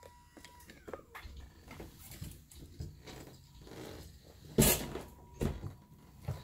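Handling and movement rustle from a hand-held phone, then a sharp thump about four and a half seconds in and a smaller knock just under a second later: the person carrying the phone bumping into a door.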